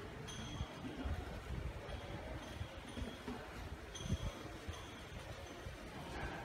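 Faint outdoor ambience: a low rumble with short, thin high-pitched tones that come and go several times.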